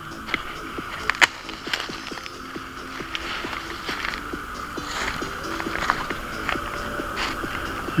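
Footsteps crunching through dry fallen leaves and twigs, with irregular snaps and rustles, the sharpest about a second in, over a steady hiss.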